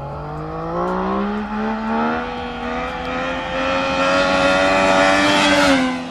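Yamaha MT-09's three-cylinder engine accelerating hard at full throttle, the rider pulling a power wheelie. The engine note climbs in pitch over the first two seconds, holds high and rises slowly, then drops off near the end.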